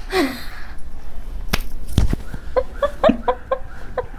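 People bursting into laughter: a breathy falling gasp at the start, then a rapid staccato laugh of short 'ha' pulses, about five or six a second, through the second half. Two sharp smacks come near the middle.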